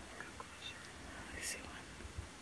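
Faint whispering, with a soft hiss about one and a half seconds in and a few small clicks.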